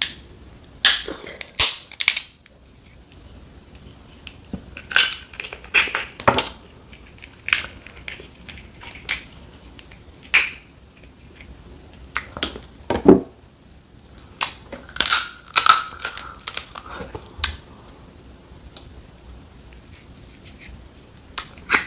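Boiled snow crab leg shells being cracked and snapped apart by hand: sharp cracks and crunches come in irregular clusters, some single and some in quick runs of several.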